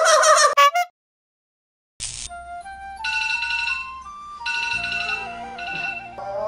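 A short electronic ringtone-style melody of clear notes climbing step by step over a soft bass pulse. It follows the tail of a wavering vocal sound and about a second of silence.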